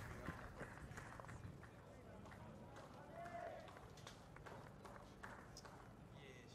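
Near silence: faint open-air cricket-field ambience from the broadcast's field microphones, with distant indistinct voices and a few light knocks.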